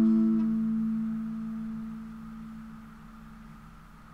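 Acoustic guitar's last strummed chord ringing out and dying away over about three seconds, the lowest note lingering longest, leaving only faint hiss.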